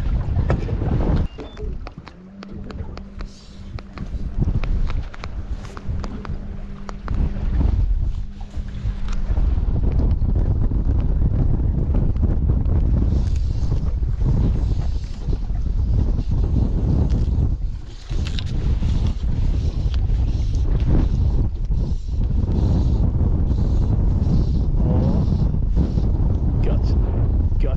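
Strong gusty wind buffeting the microphone, a heavy, uneven low rumble. A steady low hum sounds for several seconds near the start.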